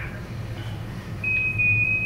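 A steady high-pitched electronic beep from the soundtrack of projected moon-landing footage. It starts a little over a second in and is still sounding at the end, over a constant low hum.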